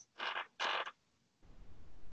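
Two short, quiet creaks in quick succession, then a low rumble near the end.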